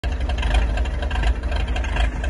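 Jeep CJ-5's engine running as it drives slowly through deep mud, a steady heavy low rumble.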